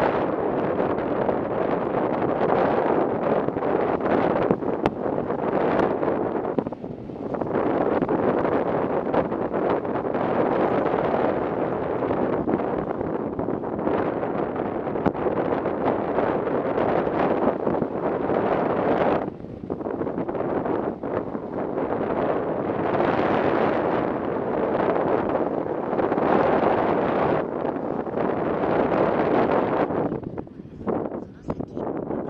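Wind rushing over the microphone of a moving motorcycle: a loud, steady roar that eases briefly twice, about 7 and 19 seconds in.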